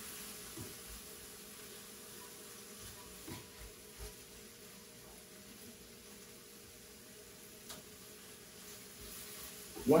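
Ground turkey sizzling quietly in a skillet while a spatula stirs and breaks it up, with a few soft taps of the spatula against the pan, over a faint steady hum.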